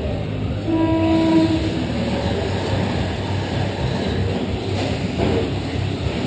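A held electronic start tone sounds about a second in, then a pack of radio-controlled short-course trucks accelerates off the grid, their motors and tyres making a steady buzzing rush over the dirt.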